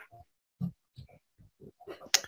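A few faint, short, scattered noises in a pause between speakers on a video-call line, the clearest about two thirds of a second in.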